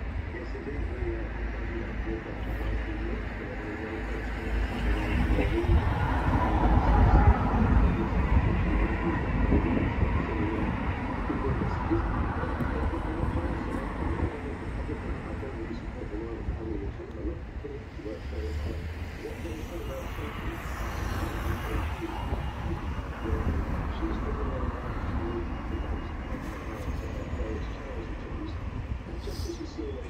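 Outdoor city background: a steady low rumble of traffic that swells louder about six to nine seconds in, with indistinct voices underneath.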